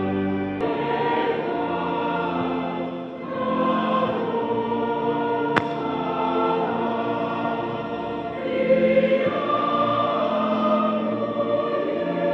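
A mixed choir of young men and women singing together in parts, with held chords. About half a second in, the sound changes abruptly at an edit cut.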